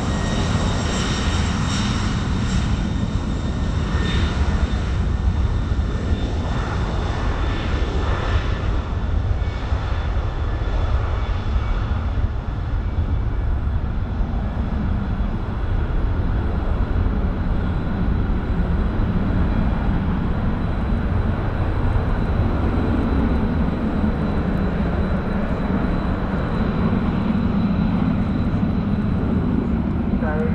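Boeing 747-400's four turbofan engines at takeoff power. A jet whine with high steady tones over a deep rumble in the first several seconds as it accelerates down the runway, leaving a steady rumble that grows heavier near the end as the aircraft climbs away.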